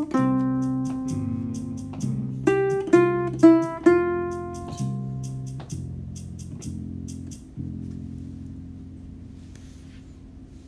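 Ukulele picking single melody notes over a slow backing track: one note at the start, then four quick notes around three seconds in. The backing track's low notes carry on after the melody stops and fade out toward the end.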